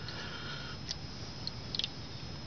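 Faint swishing of a hand stirring shallow water in an aluminium cookie tin, with a few small, brief ticks about a second in and again near the end.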